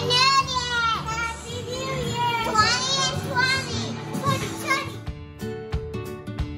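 A child's high-pitched excited shouts and squeals over background music. About five seconds in, the voices stop and the music carries on alone with a regular beat of plucked notes.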